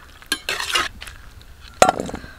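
Perforated steel ladle scooping boiled jackfruit pieces out of a wok, with brief scraping and clicking of metal on metal. It ends with one sharp clink, the loudest sound, as the ladle meets the steel bowl.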